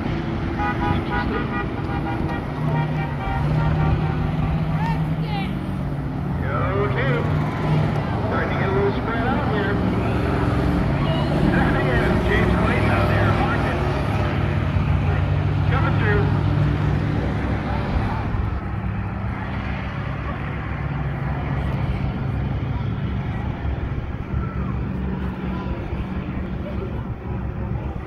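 Several school bus engines running as the buses race around a figure-eight track, a steady low drone that grows louder through the middle, with spectators' voices and shouts mixed in.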